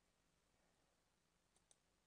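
Near silence: faint room tone, with two faint clicks in quick succession about one and a half seconds in.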